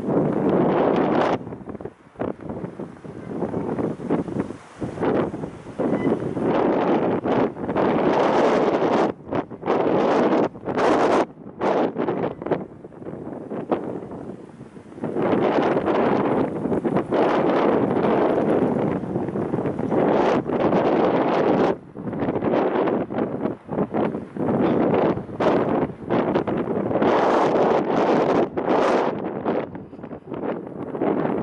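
Wind buffeting the microphone, a loud rough rushing that comes in gusts and drops away again and again.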